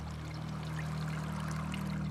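Hot nitric acid solution poured in a steady stream from a glass beaker through a plastic funnel into a jug.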